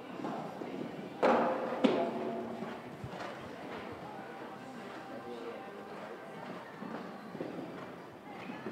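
Horse's hoofbeats on sand footing in a large indoor hall, under a background of voices. About a second in comes a sudden loud sound that rings briefly, followed by a sharp knock just under a second later.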